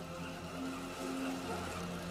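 Quiet background music from a TV drama's score, with long held low notes.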